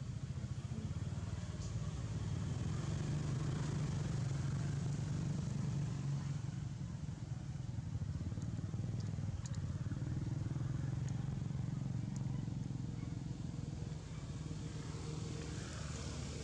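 Low engine rumble of a motor vehicle, steady throughout and swelling twice as if passing, with a few faint clicks.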